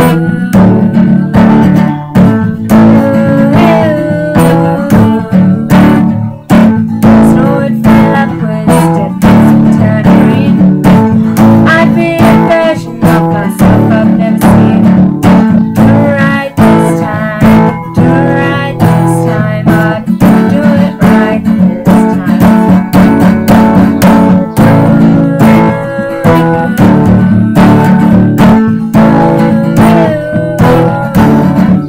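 Woman singing a ballad while strumming an Ovation-style acoustic guitar, with steady chords under her voice.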